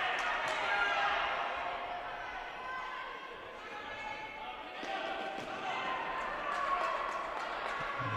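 Sounds of indoor futsal play: the ball being kicked and struck on the court, with players calling out to one another.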